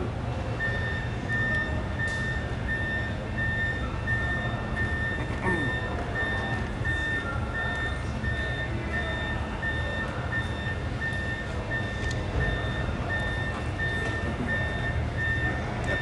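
An electronic warning beeper sounding a steady run of short, high, identical beeps at an even pace, over a low, steady engine-like rumble.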